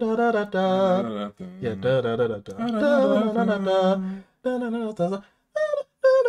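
A low singing voice holds a series of sustained notes in short phrases with brief gaps between them. It is low for a female voice, in a range likened to a mid tenor.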